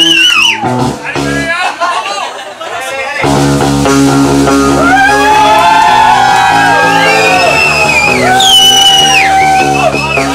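Live band with electric guitars and singing. The music drops out briefly, leaving only voices, then the full band comes back in loud about three seconds in.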